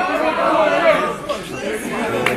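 Chatter of a group of young male fans, several voices talking and calling out at once, louder in the first second.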